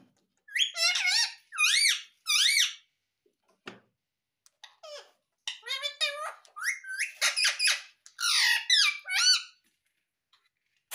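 Indian ringneck parakeet giving high, squeaky calls: three loud calls that rise and fall in pitch in the first few seconds, then a longer run of rapid chattering calls from about halfway on.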